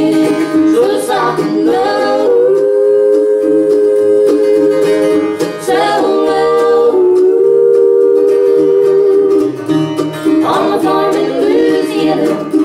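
Live bluegrass band playing: upright bass, acoustic guitar and mandolin, with voices singing long held harmony notes twice.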